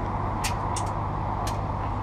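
Diesel truck engine idling steadily with a low hum, with a few sharp clicks during the second.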